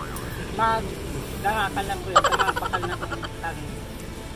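Short bits of quieter speech, a few words at a time, over a steady hum of street traffic.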